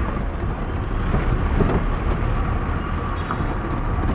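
Car driving at low speed, heard from inside the cabin: a steady engine and road rumble with a few light knocks.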